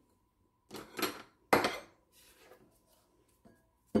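Glass bowls and a wooden spoon being handled while honey is poured from one bowl into another. There are a few short scrapes and knocks, the loudest a sharp knock about a second and a half in, and a faint steady tone underneath.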